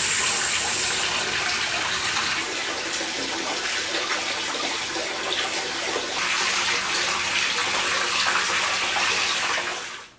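Hot-spring water pouring steadily from the spout into an open-air rock bath: a constant rushing splash that fades out at the very end.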